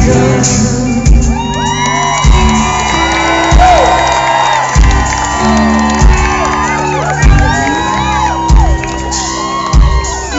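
Live rock band playing a slow groove, a heavy drum beat about every second and a bit over a held bass, with the crowd whooping and shouting over it.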